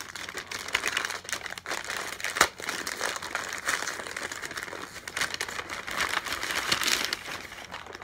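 Brown paper bag being unfolded and opened by hand: continuous crinkling and rustling of stiff paper with many sharp crackles, the loudest about two and a half seconds in.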